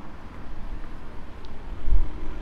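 Outdoor ambience of road traffic and wind on the microphone: a steady noisy hiss over an uneven low rumble that swells briefly near the end.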